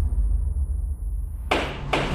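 Trailer soundtrack: a low, dark rumble with a faint high hiss above it, then a sudden rush of noise about one and a half seconds in.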